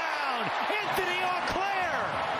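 Excited voices yelling in sweeping, unworded shouts over stadium crowd noise just after a touchdown catch, with a few short thuds.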